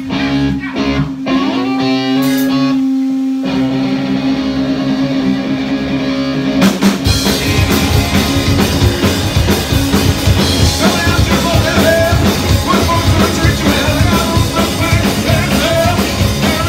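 Live punk rock band: electric guitar and bass notes sound over a steady held tone, then about six and a half seconds in the drum kit and the full band come in together, fast and loud.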